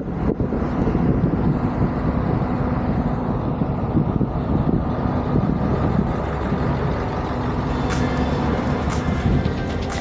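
Steady low rumble of a vehicle's engine and tyres while driving slowly, heard from the vehicle itself, with a faint steady engine hum.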